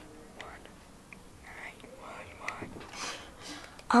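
A person whispering softly, a few faint breathy phrases.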